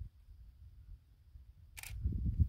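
Faint low rumble with a single short, sharp click near the end.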